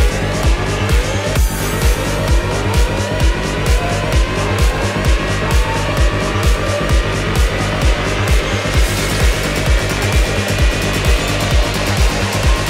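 Electro/fidget house dance music: a steady, loud kick-drum beat under a synth that repeats short rising pitch sweeps. About three-quarters of the way in, brighter cymbal or hi-hat noise joins.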